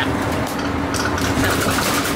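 Engine and road noise of a moving bus heard from inside the cabin: a steady rumble with a constant hum.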